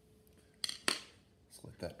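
A paintbrush set down on the painting table: two sharp clicks about a quarter second apart, a little over half a second in.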